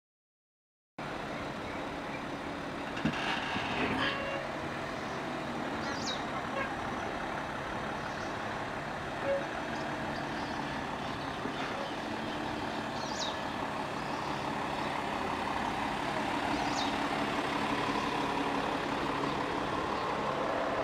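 Porsche Cayenne engine idling steadily, starting about a second in and growing slightly louder toward the end, with a few short high chirps over it.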